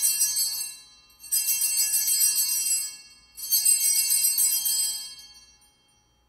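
Altar bells, a cluster of small hand bells, shaken in three rings during the elevation of the chalice at the consecration. A ring is already sounding and fades within the first second, then two more follow about two seconds apart, the last dying away near the end.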